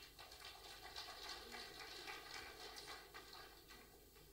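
Faint audience applause, many scattered claps that build about a second in and taper off near the end.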